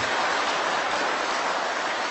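Audience applauding: many people clapping together in a steady, even patter.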